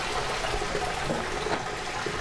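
Hot-spring water running steadily into a foot bath, a continuous trickling flow.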